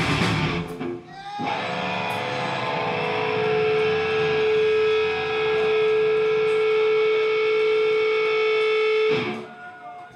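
The full band crashes to a stop about a second in, leaving an electric guitar ringing with one long, steady sustained tone for about eight seconds, cut off near the end.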